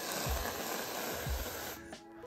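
Aerosol can of Reddi-wip whipped cream spraying: a steady hiss of cream and propellant from the nozzle that stops shortly before the end.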